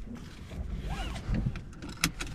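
A car seatbelt being pulled out of its retractor, the webbing rustling and sliding, followed by a sharp click at the end as the buckle latches.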